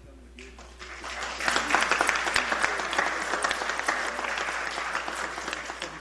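Audience applauding, a clatter of many hands clapping that swells over the first second and a half and fades near the end.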